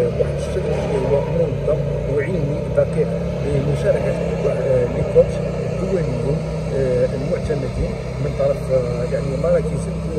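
A man speaking continuously, over a steady low rumble.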